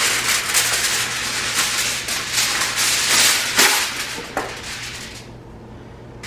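Aluminium foil crinkling and rustling loudly as a sheet is pulled off the roll and handled on a countertop. The crackling dies away about five seconds in.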